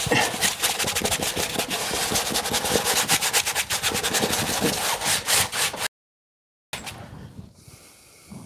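Paintbrush scrubbing oil paint onto a stretched canvas in rapid back-and-forth strokes. The sound cuts off suddenly about six seconds in and comes back much fainter.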